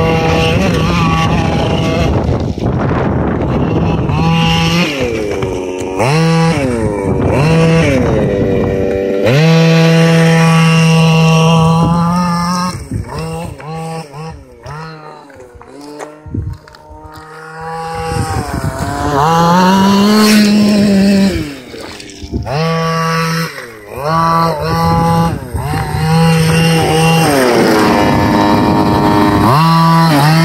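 Losi DBXL 1/5-scale RC buggy's small two-stroke petrol engine revving in repeated bursts, the pitch rising and falling with the throttle, dropping back to a steady idle between them. It is quieter for a few seconds around the middle.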